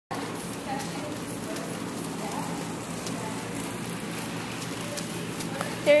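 Horse trotting on soft dirt arena footing: muffled hoofbeats over a steady scuffing noise.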